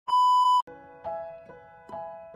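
A loud, steady test-tone beep lasting about half a second, the tone played with a TV colour-bar test card, then a slow piano melody begins, one note about every half second.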